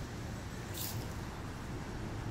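Steady low outdoor rumble, with one short sharp hiss a little under a second in.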